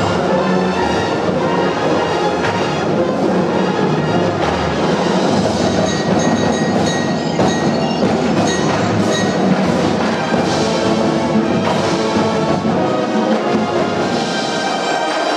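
Marching band playing: a full marching brass section sounding sustained chords together with marching drums, sharp percussion hits punctuating the music.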